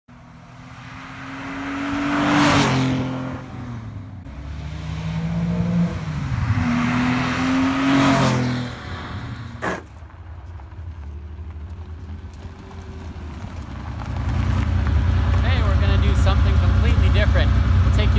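A Porsche 911's flat-six engine accelerating past twice, its pitch climbing through the gears and falling away after each pass, with a single sharp click just before ten seconds in. From about fourteen seconds in the engine idles close by with a steady low rumble.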